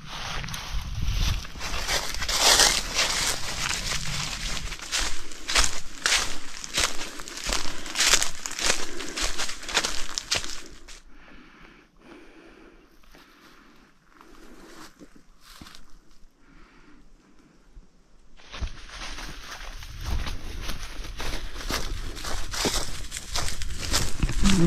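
Hikers' footsteps on a steep forest trail, an irregular run of steps. It drops to quiet for several seconds about halfway through, then picks up again.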